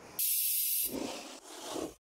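Edited whoosh sound effect: a sharp burst of high hiss lasting about half a second, then a softer, fuller rushing noise that dips and swells and cuts off suddenly at the end.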